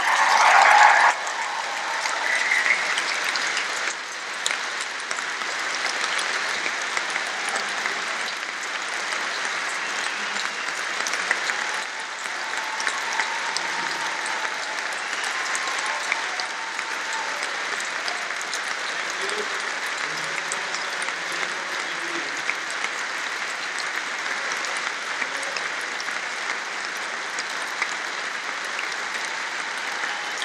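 Large audience applauding steadily for a long time. The applause is loudest in the first second.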